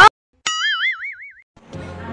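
A cartoon "boing" sound effect: a single springy tone about half a second in, whose pitch wobbles up and down for about a second before it stops.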